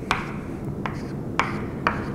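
Chalk on a blackboard: four sharp taps as short strokes and dots are drawn, with light scratching between them.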